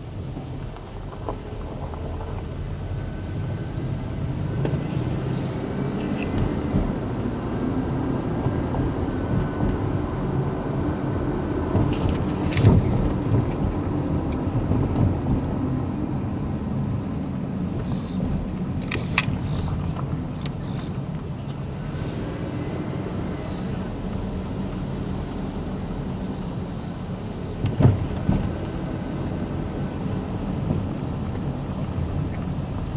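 Car running along at low speed, heard from inside the cabin with the windows down: steady engine and road noise that swells over the first few seconds. A few sharp clicks or knocks stand out, about 12 seconds in, twice around 19–21 seconds, and near the end.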